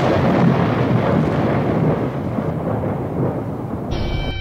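Loud, continuous rumbling noise, easing off slightly in the second half.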